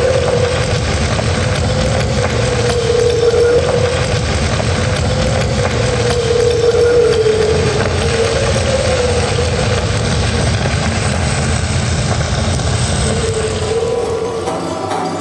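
A loud, steady rumbling drone with a single wavering tone drifting slowly up and down above it, a sound-effect soundscape accompanying a stage performance.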